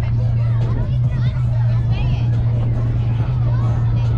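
Overlapping chatter and calls from softball players and spectators, with no single clear voice, over a steady low hum.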